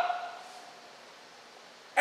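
A pause in a man's speech: his last word fades out with the room's echo in the first half-second, then only faint steady room hiss until he speaks again at the very end.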